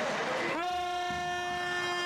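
Gym scoreboard horn sounding one long steady blast that starts about half a second in, rising into pitch as it starts, and sags in pitch as it cuts off at the end.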